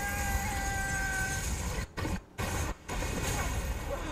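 Movie-trailer sound design for a magic spell going wrong: a heavy deep rumble with a steady high tone that fades after about a second and a half. Around two seconds in, the rumble cuts out to near silence three times in quick succession, then comes back.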